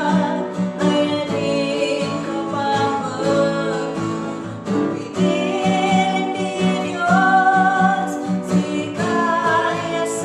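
A woman singing an Igorot gospel song in Kankana-ey, with instrumental accompaniment.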